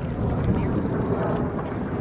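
Steady low outdoor rumble of wind buffeting the microphone, with no distinct event standing out.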